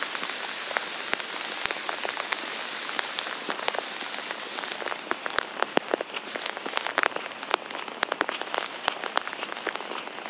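Steady rain falling on wet pavement: an even hiss with many sharp, irregular ticks of individual drops.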